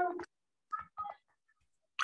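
Short electronic beeps like a phone's key or message tones: a brief pitched tone at the start, then two quick beeps about a quarter second apart about a second in.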